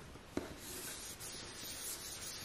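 Two light knocks, then a small cloth rubbing steadily across a hard desk surface, starting about half a second in.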